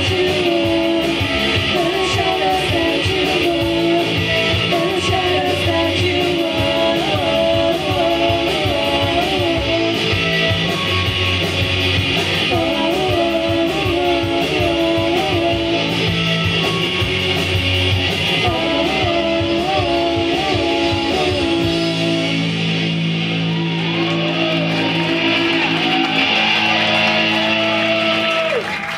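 Live indie rock band playing: distorted electric guitars, bass and drums, with a voice singing. About three quarters of the way through, the drums drop out and the guitars ring on toward the close of the song.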